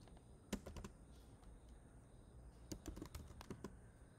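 Faint keystrokes on a computer keyboard: a few separate key presses about half a second in, then a quicker run of typing near the end.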